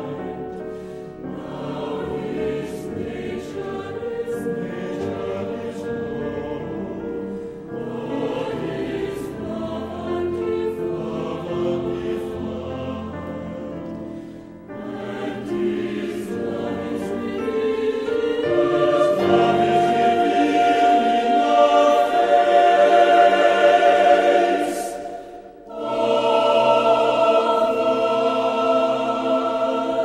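A choir singing a slow choral song, growing louder in the second half, breaking off briefly about 25 seconds in, then coming back on a loud held chord.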